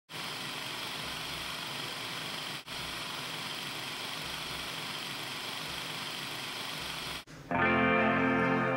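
A steady hiss of static-like noise that drops out for a moment near the three-second mark and cuts off sharply after about seven seconds. Just before the end, music begins with a sustained pitched chord.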